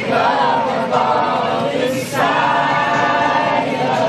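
A crowd singing together unaccompanied, many voices holding long drawn-out notes, the longest running for about a second and a half in the second half.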